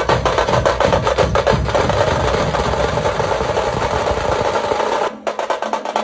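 Loud, rapid drumming: a dense run of sharp strikes over a deep low rumble. About five seconds in, the low end cuts out suddenly and lighter, fast drumming carries on.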